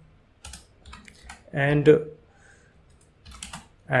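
Typing on a computer keyboard: short runs of keystroke clicks about half a second in, about a second in, and again near the end.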